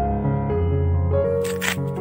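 Instrumental background music with sustained notes; about one and a half seconds in, a brief dry rasping tear of coconut husk being pulled apart by hand.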